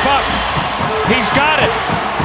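A television commentator's voice over the steady background noise of an arena crowd.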